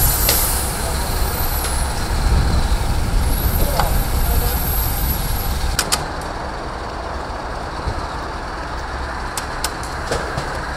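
Heavy truck diesel engine running steadily at idle, a low rumble, with a faint high whistle over it in the first half and a few sharp clicks or knocks in the second half.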